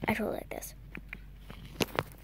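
A short whispered voice of a child in the first half-second, then a few light clicks and taps of handling.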